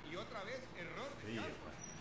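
Faint male speech throughout, quieter than the studio conversation around it.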